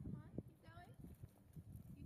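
Faint, distant voices of people talking outdoors, with a few low thumps underneath.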